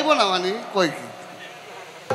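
A man's voice through a microphone and public-address speakers, trailing off within the first second, then a faint steady buzz.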